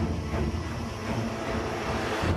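Low, steady rumble of car cabin and road noise that starts suddenly, heard through a phone livestream recorded inside a moving car.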